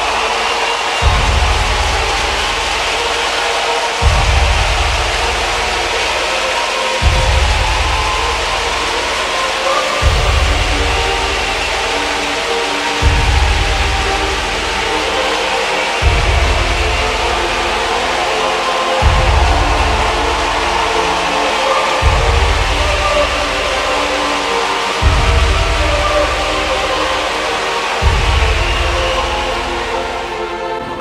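Background music with sustained tones and a deep bass note that hits every three seconds.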